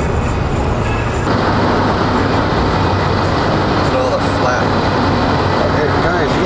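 Steady road noise of a moving vehicle, heard from inside the cabin, growing brighter about a second in.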